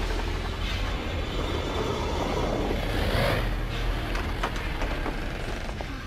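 Steady low rumbling with a broad hiss above it and a few faint knocks: an ominous suspense sound effect in the TV episode's soundtrack as the kids hear something in the house.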